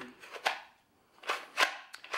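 Taurus G3 pistol being pushed into a Kydex outside-the-waistband holster: a few short scrapes and light clicks of the polymer frame and slide against the Kydex. The retention is at its factory tension and fairly loose, so the click as it seats is faint.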